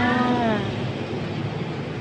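The tail of a woman's drawn-out spoken syllable, held and falling slightly in pitch, fading out a little over half a second in. After that there is steady background noise with a low hum.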